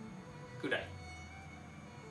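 A pause in a man's talk, broken by one short vocal sound from him a little under a second in, over a low steady room hum.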